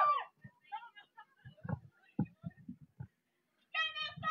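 A long drawn-out shout breaks off at the start. Then come faint voices and a few soft, irregular low thumps, and a voice calls out again just before the end.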